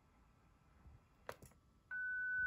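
Near silence with two faint clicks about a second and a half in, from the mouse pressing FLDigi's Tune button. Right at the end a steady single tone starts: the tune carrier heard through the IC-705's monitor.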